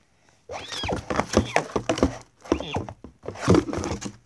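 A child making horse noises with her own voice for a toy horse that bolts: a run of whinnying, huffing vocal sounds that starts about half a second in, mixed with sharp knocks and rustles as the toy and cardboard stable are handled.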